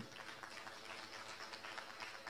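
Faint, steady background noise of a hall heard through the podium microphone, with no distinct event.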